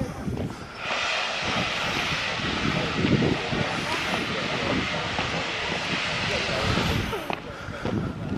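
Steam locomotive blowing off steam: a loud, steady hiss that starts suddenly about a second in and cuts off near the end.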